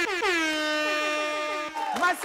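One long air-horn blast that swoops down in pitch at the start and then holds a steady note, with shorter falling horn toots over its opening; it ends a little before the close.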